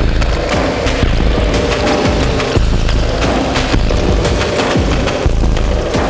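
Improvised noisy, industrial electronic music from an Erica Synths Perkons HD-01 and a Soma Pulsar-23 analog drum machine: dense, irregular noisy percussive hits over a constant heavy low drone.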